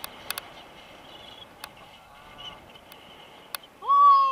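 Steady wind noise on the microphone of a tandem paraglider in flight, with a few sharp clicks. Near the end the passenger gives a short, loud yell that holds a high pitch and then falls.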